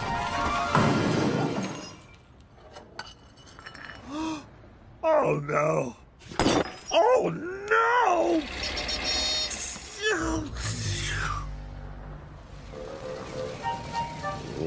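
Cartoon sound effects of china mugs shattering inside a cardboard box, mixed with the character's dismayed wordless vocal noises and background music.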